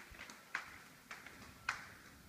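Footsteps on a hard floor in an empty house: three sharp taps about half a second apart.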